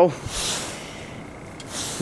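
Breath noise close to the microphone in a pause between sentences: a soft hiss of breath out for most of the first second, then a short breath in just before speaking again.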